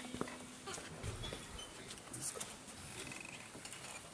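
Faint hall room tone with scattered small clicks and rustles.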